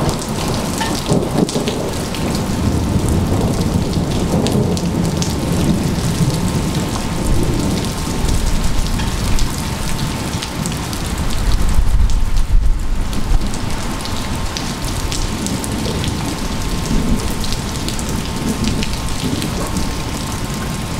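Steady rain pattering on gravel and a wet concrete patio, with a low rumble of thunder swelling about halfway through.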